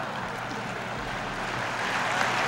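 Large audience laughing and applauding, a steady even wash of sound that swells slightly near the end.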